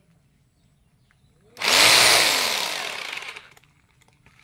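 Ingco 1050 W rotary hammer drilling into a stone in one short burst: it starts suddenly about one and a half seconds in, its motor pitch rises and then falls, and it fades away over about two seconds as the motor winds down.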